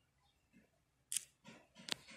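A few sharp plastic clicks from handling the chainsaw's top cover, the two loudest about a second and a second and a half in.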